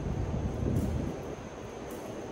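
Steady low rumbling background noise of an underground metro platform with no train in, a little louder in the first second.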